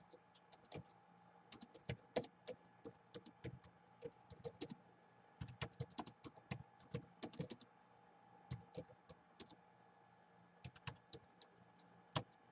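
Typing on a Gateway laptop keyboard: irregular runs of soft key clicks, with a couple of short pauses in the second half.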